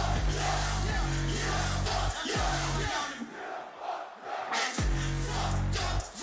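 A hip-hop track played live over a festival sound system, carried by heavy sustained bass notes, with a large crowd audible over it. The bass cuts out about halfway through for nearly two seconds, then comes back in.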